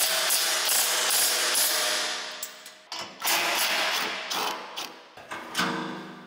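DeWalt cordless power driver running in two bursts, about three seconds and then about two seconds, backing out the fasteners of an excavator side cover panel. Background music plays underneath.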